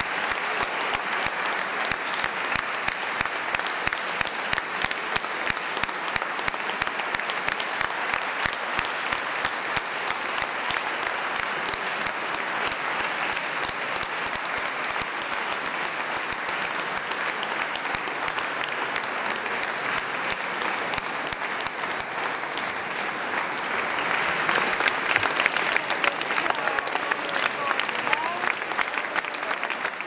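Audience applauding, a dense, steady clapping that grows louder about three-quarters of the way through.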